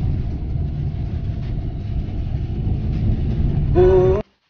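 Inside a car's cabin while driving on a rough dirt road: a steady low rumble of engine and tyres, with a few faint knocks from the bumps. A voice starts just at the end.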